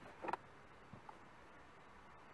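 A few small plastic clicks and taps as a cable connector is plugged back in on the car's dashboard: a sharp double click about a third of a second in, then two faint ticks around a second in.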